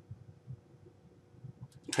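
Quiet room with a few faint, soft low thumps: handling noise as a small salvaged circuit board with trailing wires is held and turned over in the hand.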